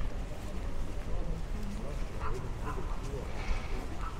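Outdoor ambience of indistinct, faint voices over a steady low rumble, with two short high chirps a little after two seconds in.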